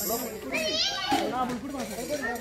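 A group of people talking and calling out over one another, with a brief high-pitched wavering sound about half a second in.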